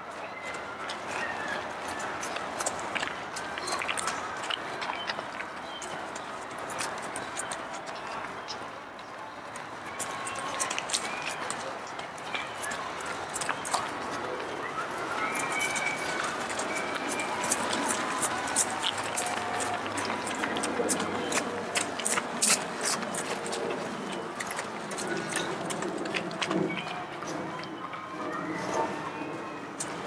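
Footfalls of many cross-country runners on a gravel trail, thickest about halfway through as a group passes close by, with indistinct voices calling in the background.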